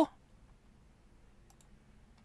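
Two faint computer mouse clicks in quick succession about one and a half seconds in, over quiet room tone.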